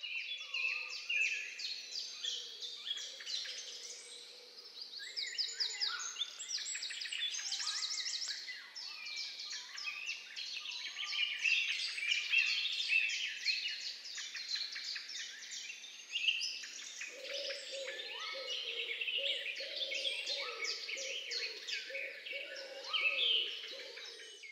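Several birds singing and chirping at once: a dense, overlapping chorus of short high chirps and quick trills.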